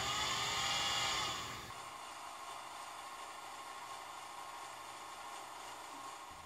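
A small 12-volt geared DC motor whirring for about a second and a half, its pitch sweeping up and back down as its speed controller knob is turned. It then drops to a faint steady hum.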